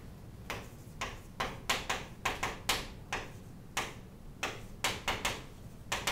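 Chalk writing on a chalkboard: an irregular run of about twenty sharp taps and short scratches, a few a second, as a word is written out, starting about half a second in.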